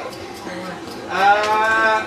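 A person's voice giving one long drawn-out call without words, starting about a second in and held steady to the end.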